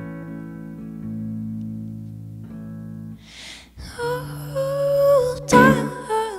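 Live solo performance on a clean electric guitar: a chord rings out and fades slowly for about three seconds. About four seconds in, a woman's singing voice comes in over strummed guitar chords.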